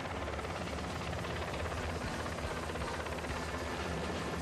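Helicopter in flight, its rotor and engine making a steady, even noise.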